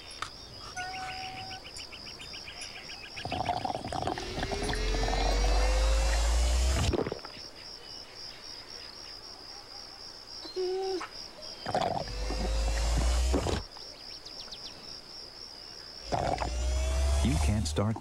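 Crickets chirping in a steady pulsing trill, broken three times by longer, louder sucking sounds that rise slowly in pitch: children drinking juice through straws.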